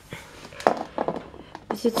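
Handling noise: a few irregular clicks and knocks as the camera is moved about, with a woman beginning to speak near the end.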